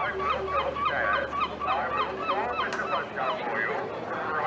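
Several gulls calling, short squawking calls coming several times a second and overlapping.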